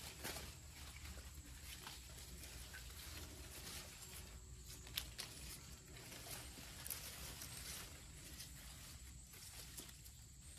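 Faint rustling of a trailing houseplant vine's leaves and stems as it is handled and pulled apart to untangle it, with a few small clicks, the sharpest about five seconds in.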